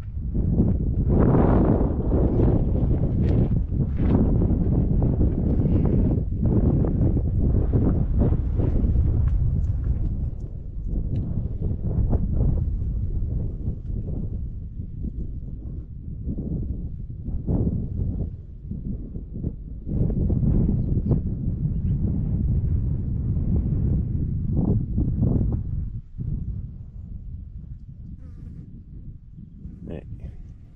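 Wind buffeting the microphone in uneven gusts, with the buzz of flies close to the camera. The noise eases in the last few seconds.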